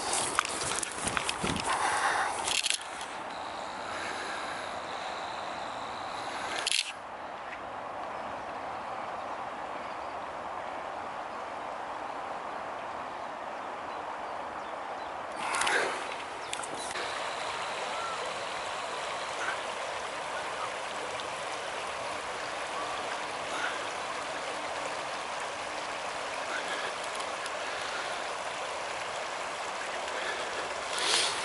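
Steady rushing of a fast-flowing river's current over shallows. A few brief knocks and rustles come in the first seconds and again about halfway through.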